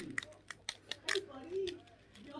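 A net mesh bag of small plastic toy pieces being handled, giving a few light clicks and rustles in the first second or so.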